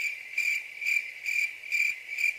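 Cricket chirping: a steady high trill pulsing about twice a second. It is the comic 'crickets' cue for an awkward silence, cut in abruptly.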